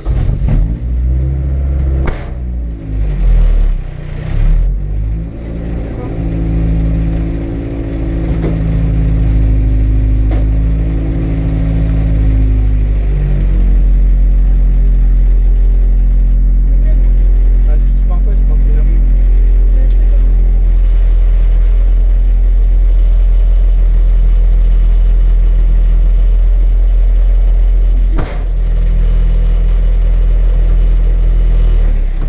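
Rally car engine heard from inside the stripped cabin, revved in several uneven blips for the first few seconds, then running at a steady raised idle. There is a short dip with a click near the end.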